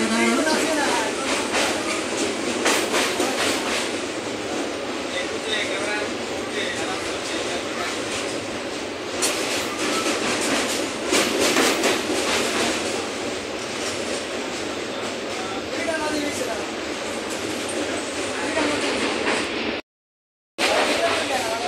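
Passenger train running across a steel truss railway bridge, heard from inside the coach: a continuous rumble and rattle with bursts of clacking from the wheels on the track. The sound cuts out abruptly just before the end.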